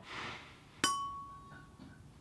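Glazed ceramic plant pot struck once by hand, giving a sharp clink and then a clear ringing tone that dies away within about a second.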